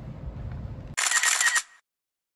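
A camera shutter click about a second in, short and bright, over a low steady background rumble.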